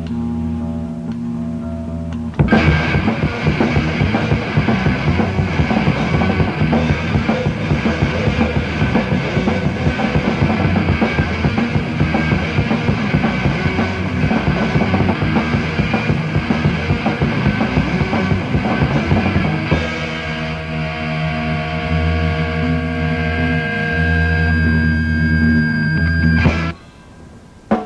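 Rock band demo recording. It opens with a quiet passage of held guitar and bass notes; about two seconds in the full band with drums comes in loud, then thins back to long held chords for the last few seconds.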